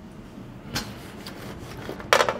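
Light clicks and rattles from a metal sheet pan of toasted croutons being handled at an open oven, with one sharper click about three quarters of a second in.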